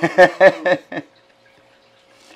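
A man laughing in about four short bursts during the first second, then a pause with only a faint steady hum.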